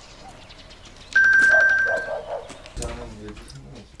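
A single bell-like ding about a second in, one steady high tone that fades away over about a second, followed near the end by a short, lower-pitched call.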